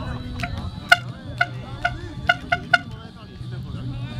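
A football being kicked again and again on an artificial-turf pitch: seven sharp, ringing thuds of boot on ball, the loudest about a second in and three quick ones in a row near the end, with players' voices in the background.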